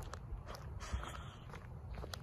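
Footsteps of Nike Air Monarch sneakers on a concrete sidewalk, a few short scuffs and taps, the sharpest about a second in.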